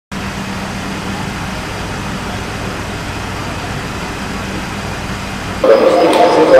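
Steady motor-vehicle noise with a constant low hum, cut off suddenly near the end as voices begin.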